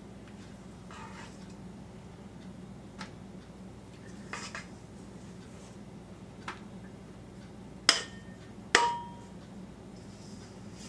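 Utensil scraping thick cookie-bar dough out of a stainless steel mixing bowl, with a few faint scrapes and clicks, then two sharp metallic clinks about a second apart near the end as it knocks against the bowl, the second ringing briefly.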